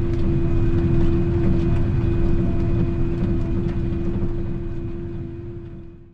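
A large farm tractor's diesel engine running steadily while pulling a tillage implement, with a constant hum over a low rumble, fading out near the end.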